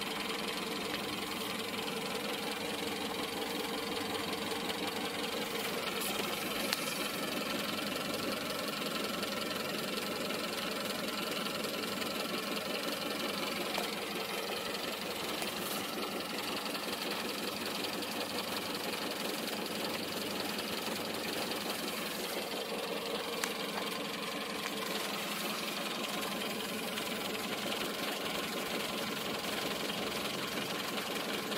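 Renault Clio's engine idling steadily.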